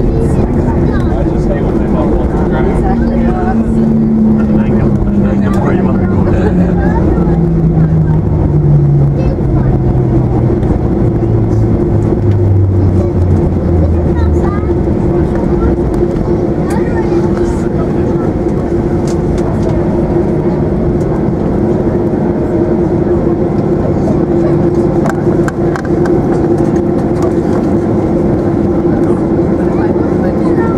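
Cabin noise of a Boeing 737-800 slowing on its landing rollout: a steady hum with a rumble, and an engine tone that falls steadily in pitch over about ten seconds as the engines spool down.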